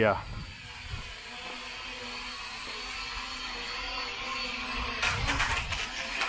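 Small toy quadcopter's motors and propellers buzzing steadily, slowly getting louder. About five seconds in, a rapid rattling clatter as the drone reaches the wall and its propellers strike: the obstacle-avoidance sensors have not stopped it.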